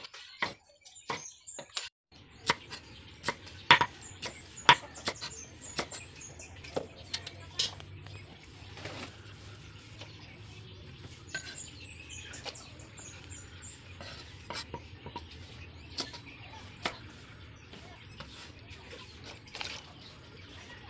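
Kitchen knife cutting vegetables on a cutting board: irregular sharp knocks, closely spaced in the first several seconds and sparser later. A steady low rumble sits underneath from about two seconds in.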